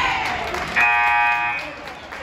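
Gym scoreboard buzzer sounding once for just under a second, a steady flat tone that starts suddenly. With the team in a timeout huddle, it signals the end of the timeout.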